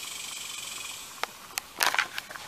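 Quiet outdoor background hiss with a faint high band that fades out about a second in, then a few short clicks and a sharp breath or sniff close to the microphone near the end as the camera is moved.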